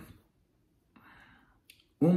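Near silence in a pause between a man's spoken phrases: a faint breath about a second in and a small mouth click just before he speaks again.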